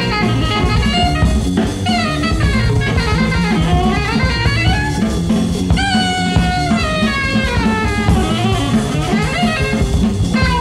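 Live jazz trio playing: a saxophone melody with sliding, bending notes over a drum kit and a low moving bass line.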